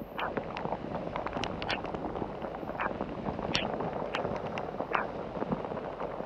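Heavy rain: a steady hiss of the downpour with irregular sharp ticks of drops striking close to the microphone, and rustling of wet waterproof clothing.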